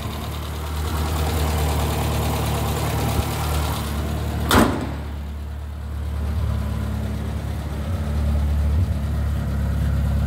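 The 1098 cc BMC A-series four-cylinder engine of a 1968 Morris Minor 1000 idles steadily with the choke pushed back in. A single sharp knock comes about halfway through.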